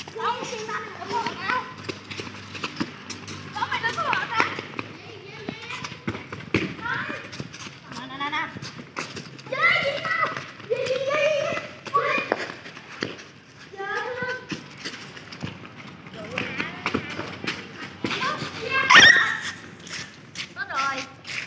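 Children shouting and calling out to each other during a football game, with occasional knocks of kicks on a light plastic ball. The loudest moment is a high-pitched shout about a second before the end.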